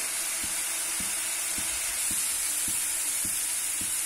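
Onion and spice masala sizzling in hot oil in a frying pan, a steady hiss with faint soft ticks about twice a second.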